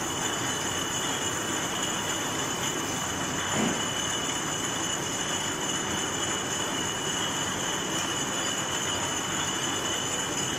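Glass bottle depalletizer and its conveyors running steadily, with a constant high whine over the machine noise. A brief louder sound about three and a half seconds in.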